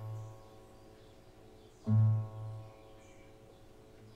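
Nylon-string classical guitar played slowly: a chord over a low bass note is plucked about two seconds in and left to ring and fade, and the previous chord is still dying away at the start.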